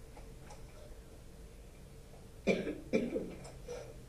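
A person coughing: two short coughs close together about two and a half seconds in, over a faint steady room hum.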